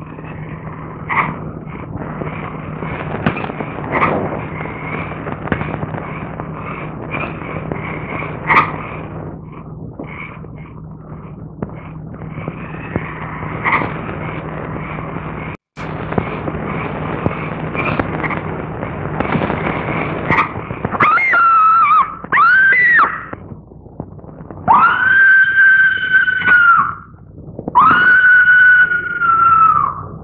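Old film soundtrack hiss with a low hum and a few faint clicks, then from about 21 seconds in two short wavering high cries followed by two long, high screams of about two seconds each.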